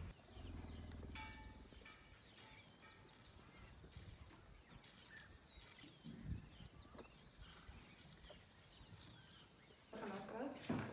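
Insects trilling steadily in a high, continuous chorus, with a soft low thump a little past the middle.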